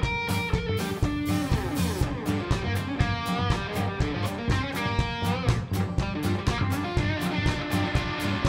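Live band playing an upbeat song: electric guitars and bass over a drum kit keeping a quick, steady beat.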